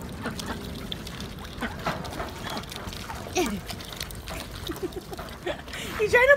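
White domestic ducks pecking feed pellets from an open hand and off a concrete ledge: a scatter of quick bill clicks and pecks, with water moving beneath them.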